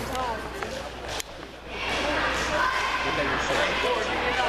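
Crowd of spectators in a large indoor hall, many voices talking and calling at once, swelling louder about two seconds in. A single sharp knock sounds about a second in.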